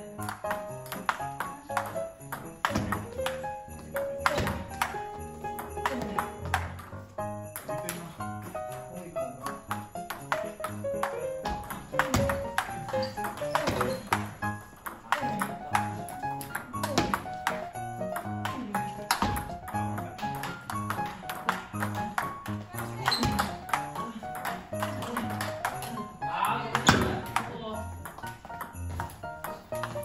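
Background music with the sharp clicks of a table tennis rally running through it: the ball is struck by rackets and bounces on the table, as topspin drives are played against backspin chops.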